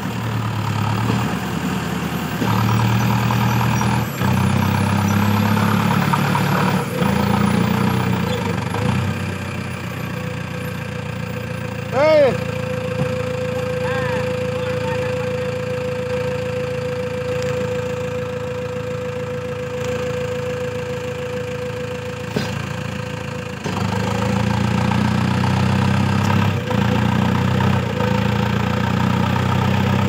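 Mahindra Arjun tractor's diesel engine pulling a loaded sugarcane trailer, the engine working hard, easing off for a stretch in the middle while a steady high tone holds, then pulling hard again near the end.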